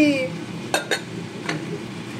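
A few sharp clinks of kitchen dishes and lids being handled: two close together, then one more about half a second later.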